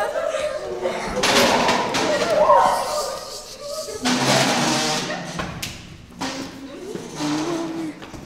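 Several young voices calling out over a close-up scuffle, with dull thuds and the rustle of bodies and clothing grappling on the floor.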